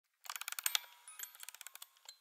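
A music box's wind-up key being turned: a rapid run of ratchet clicks, louder for the first half second and then softer, just before the tune begins.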